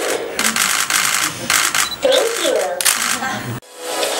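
Rapid clicking of press camera shutters, with a short voice a little past the middle. The sound cuts out suddenly near the end.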